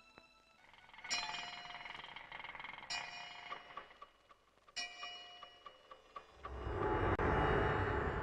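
Film score: three ringing bell-like strikes about two seconds apart, each fading away, followed near the end by a low swell of music building up.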